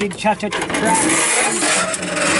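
A steady hissing rush for about two seconds as the hinged engine cover of a Bobcat MT85 mini track loader is swung down and closed, with a man's voice briefly at the start.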